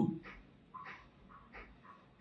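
A man's spoken word trails off, then a pause with a few faint, short sounds scattered through it.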